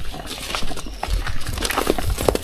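Hooves of young 3B (Belgian Blue-cross) cattle stepping and shuffling on sandy dirt as they are led on ropes: a scatter of soft, uneven steps.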